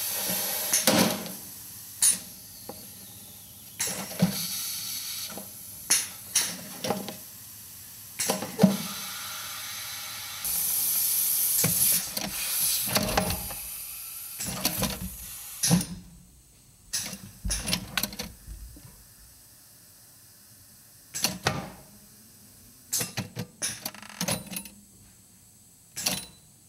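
Pneumatic air cylinders driving a steel rod at irregular intervals against a ceramic casting shell, sharp knocks as the shell chips and breaks, with a burst of compressed-air hiss about ten seconds in. In the second half the strikes thin out to scattered clicks.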